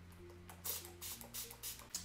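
Several short sprays from a MAC Fix+ pump mist bottle wetting a makeup brush, over faint background music.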